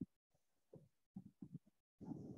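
Near silence: faint room tone that drops out completely at times, with a few brief, faint, low muffled bumps in the second half.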